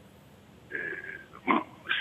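A man's drawn-out hesitation sound, 'eh', heard over a telephone line, with short pauses around it.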